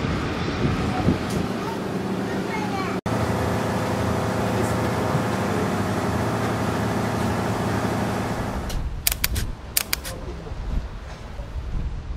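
An engine drones steadily with a low, even hum, with indistinct voices at the start. The drone stops abruptly about nine seconds in, followed by a few sharp clicks.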